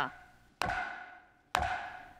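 Wooden gavel struck on the rostrum desk: two sharp knocks about a second apart, each ringing out and dying away in a large hall. These are the Speaker's gavel strikes declaring the bill passed.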